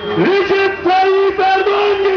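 A man singing over music, holding long steady notes in short phrases.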